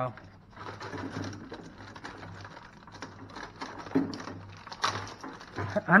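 Plastic bag crinkling and rustling, with light knocks against a chest freezer's wire basket, as hands take the bagged manual out of the basket. The rustling is irregular, with a couple of louder knocks about four and five seconds in.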